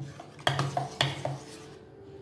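Metal spoon clinking against the side of a steel bowl while stirring thick malpua batter: four clinks in quick succession, about two a second, with a faint ring after them.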